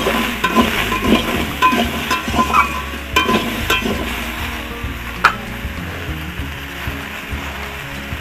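Spatula scraping and stirring pumpkin pieces frying in a steel kadai, over a steady sizzle. The strokes come about twice a second, then stop about four seconds in, leaving the sizzle and one sharp click.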